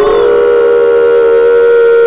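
A loud, long held tone at one steady pitch, rich in overtones, with a fainter second tone just below it.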